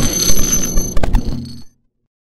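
Glitch-style electronic sound effect of a channel intro animation: a noisy digital crackle over steady high ringing tones, with two sharp clicks about a second in, cutting off suddenly near the end.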